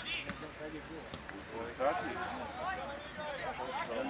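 Footballers' and coaches' voices calling out across a training pitch, with a few sharp thuds of a football being kicked.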